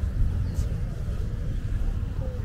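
Outdoor ambience made up mostly of a low, fluctuating rumble.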